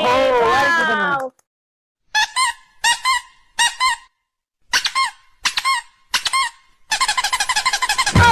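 A drawn-out cry in a voice for the first second or so, then high-pitched squeaks in quick pairs, about six pairs a second or so apart, speeding into a fast run of squeaks near the end.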